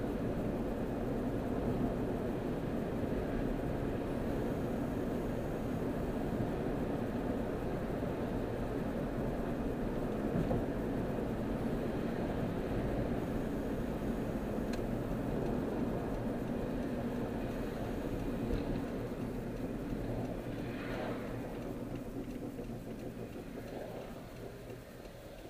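Steady engine and tyre noise of a car heard from inside the cabin while driving, dying away over the last few seconds as the car slows.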